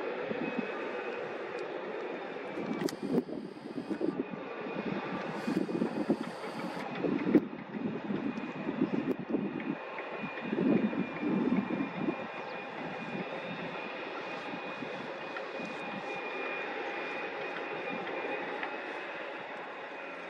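Construction machinery running: a steady engine drone with several held tones. Irregular louder rumbling comes and goes through the middle.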